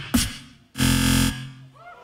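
Beatboxing through a Boss RC-505 MK1 loop station: a few sharp vocal hits, then a loud buzzing bass note held about half a second, followed by faint sliding tones near the end.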